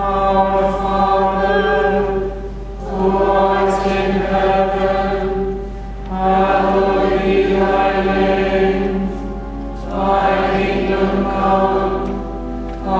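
A group of voices singing a hymn or chant together in four phrases of a few seconds each, with short breaths between, over sustained organ tones.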